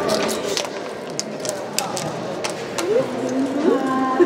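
Girls' voices talking in a sports hall, with scattered sharp clicks and taps.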